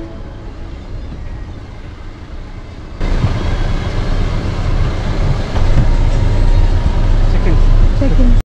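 Low rumble of a car moving slowly, heard from inside the car, stepping up abruptly and getting louder about three seconds in.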